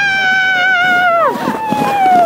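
Children's long, high-pitched yells while sliding downhill on a snow sled. One held cry drops away just over a second in, overlapped by a second cry that slowly falls in pitch.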